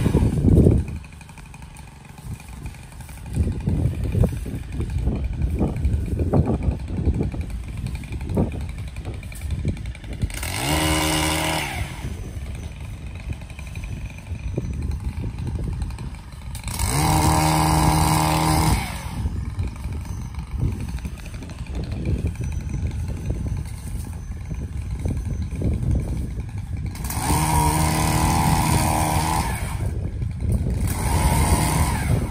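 Small-engine pole saw running while cutting branches out of a tall bush. About a second in it drops to a low idle for a couple of seconds, then picks back up, and it is revved hard three times for a couple of seconds each, about a third of the way in, just past the middle and near the end.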